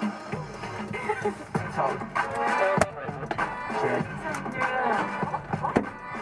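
A Spanish-language song, with singing over instruments, playing on a vehicle's stereo inside the cab.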